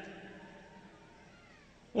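A pause in a man's amplified speech: the hall echo of his last words dies away over about a second, leaving faint room tone.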